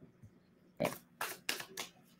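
A tarot deck being shuffled by hand: a few short, soft card-handling strokes in the second half.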